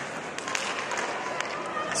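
Ice hockey arena during play: skates scraping on the ice and a few sharp clacks of sticks and puck, over a low crowd murmur.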